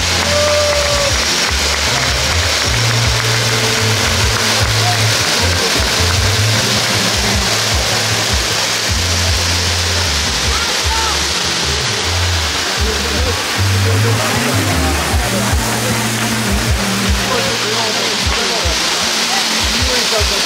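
Steady rushing hiss of spark fountains, with music and its bass line playing underneath.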